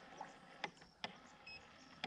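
Very quiet background with a few faint clicks and one short, high beep about one and a half seconds in.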